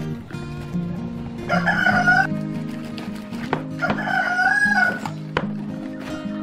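A rooster crowing twice, each crow lasting under a second, the first about a second and a half in and the second about four seconds in, over acoustic guitar background music.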